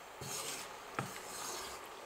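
Wooden spatula stirring and scraping through vegetables in sauce in a non-stick wok, soft and steady, with one light tap about a second in.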